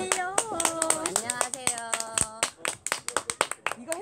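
Several people clapping their hands in quick, uneven applause, thinning out toward the end. Excited voices call out over the first half.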